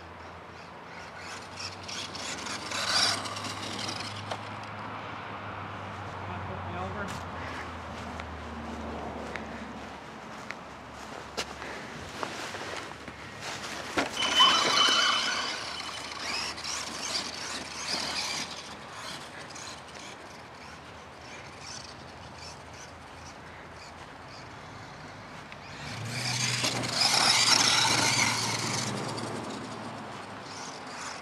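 Traxxas Summit VXL 1/16-scale electric RC truck with its Velineon brushless motor, driven across grass in bursts of throttle: motor whine and drivetrain whir that rise and fall. It is loudest about a quarter of the way in, around the middle, with a thin high squeal, and again near the end.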